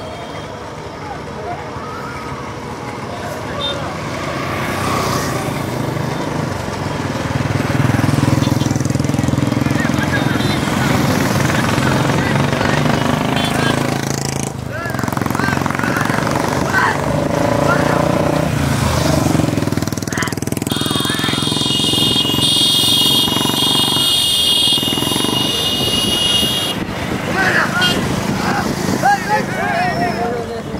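A pack of motorcycles running together as they escort a bullock cart, growing louder as they approach, with men's voices shouting over the engines. A shrill high tone sounds for about six seconds in the second half.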